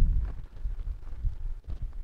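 Wind buffeting the microphone: an uneven, gusty low rumble, loudest in a gust right at the start.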